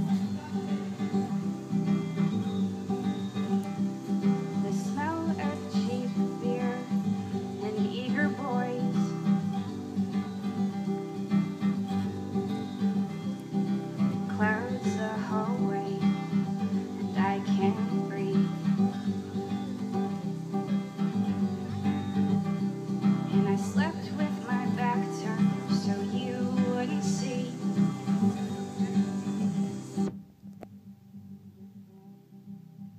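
Acoustic guitar strummed steadily in a solo live performance.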